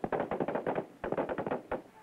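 Small-arms gunfire: two rapid bursts of shots, each a little under a second long, with a brief gap between them.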